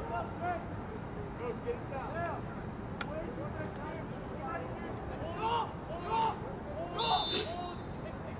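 Lacrosse players shouting short calls to one another across the field. There is a single sharp click about three seconds in, and a short, shrill whistle blast from a coach about seven seconds in, signalling the next phase of the drill.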